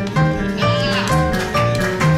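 Small acoustic jazz band playing a swing number, with a double bass sounding a note on each beat under sustained melody notes. A wavering, bending lead line comes in about half a second in and dies away by the one-second mark.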